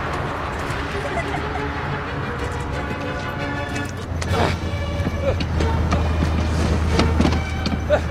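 A film soundtrack mix: a Land Rover's engine runs with a steady low hum while orchestral score music swells in about three seconds in. There is a short wordless cry around the middle.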